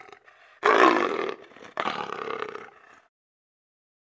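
Big-cat roar sound effect: a short quiet growl, then two roars about a second apart, the first the louder.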